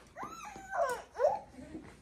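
Infant fussing: about three short, high-pitched whimpering cries that rise and fall in pitch, the loudest a little past the middle. This is a hungry four-month-old waiting to be fed.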